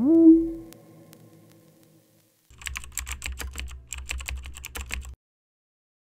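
Quick computer-keyboard typing, a dense run of clicks lasting about two and a half seconds that starts a couple of seconds in and stops abruptly. Before it, a rising electronic tone levels off and fades out over the first second and a half.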